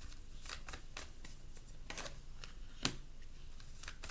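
Tarot cards being handled and shuffled by hand: an irregular run of soft riffling clicks and rustles, with one sharper click just before three seconds in.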